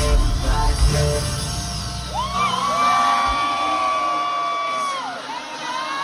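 Live concert music: a bass-heavy backing track that drops out about two seconds in. A singer then holds one long note through a microphone for about three seconds, gliding up into it and falling off at the end.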